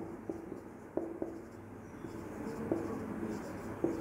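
Marker pen writing on a whiteboard, faint: a few separate short strokes and taps of the tip on the board, then a steadier run of strokes in the second half.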